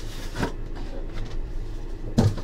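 Cardboard and a card sheet being handled and slid over a desk: soft rubbing with a light tap about half a second in.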